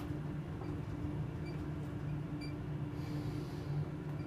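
Ride noise inside a Schindler 7000 high-rise elevator car travelling upward: a steady low rumble with a steady hum over it.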